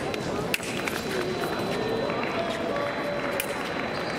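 Men's foil bout: fencers' footwork on the piste with two sharp clicks, one about half a second in and one near the end. Under it runs a steady murmur of voices in a large hall and a faint steady high tone.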